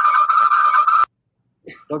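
Audio feedback howl on a video-conference line: a loud, warbling tone held at one pitch that cuts off suddenly about a second in. The host puts the cause down to a participant having the meeting open on two devices close to each other.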